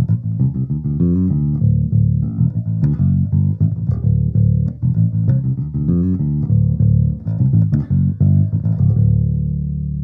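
Ibanez GVB1006 six-string electric bass played through an amp, a flowing run of plucked notes with both Bartolini soapbar pickups full and the Aguilar OBP3 preamp's bass control boosted just a little. The last note rings out and fades near the end.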